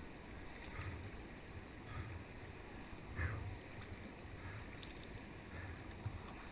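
Faint wash of moving river water with soft splashes of kayak paddle strokes, roughly one every second, heard from the kayak.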